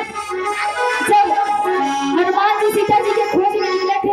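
A woman singing a devotional jagran song into a microphone over a loudspeaker system, with steady held instrumental tones under her melody.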